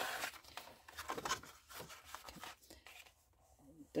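A plastic card rubbed firmly over thin tape on a paper file folder to burnish it down, making irregular scratchy strokes. The strokes die away near the end.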